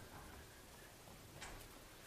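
Near silence: room tone, with a faint click about one and a half seconds in.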